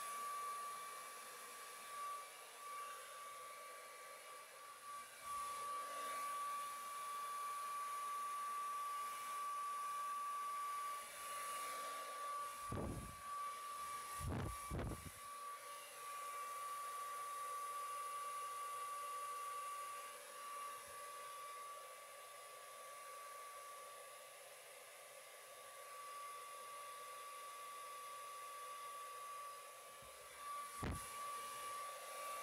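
Handheld blow dryer running steadily: airflow noise with a constant high whine. A few low thumps come about halfway through.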